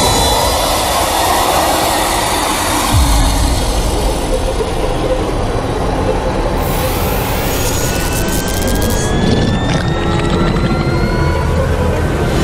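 Loud horror-film sound design: a dense noisy wash with a deep rumble that comes in about three seconds in, and slowly rising whining tones through the second half.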